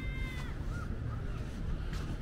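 A bird calling: one drawn-out call in the first half second, then a few short rising calls, over a steady low outdoor rumble.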